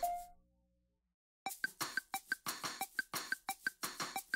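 Background music with a quick percussive beat and short mallet-like notes. It fades out at the start, goes silent for about half a second, then a new stretch of music with the same quick beat starts about one and a half seconds in.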